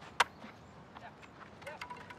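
Softball bat hitting a pitched ball: a single sharp crack about a fifth of a second in, with a short ring.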